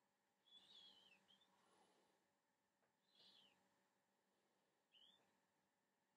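Near silence: room tone with three faint, short high chirps from a bird, spaced a couple of seconds apart.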